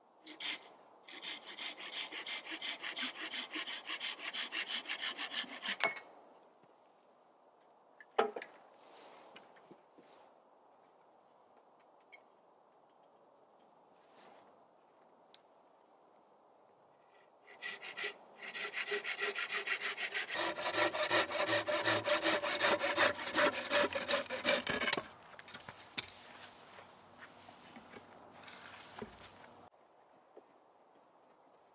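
Hand saw cutting through a log in two spells of quick back-and-forth strokes, about four strokes a second; the second spell is longer and louder. A single sharp knock falls between the spells.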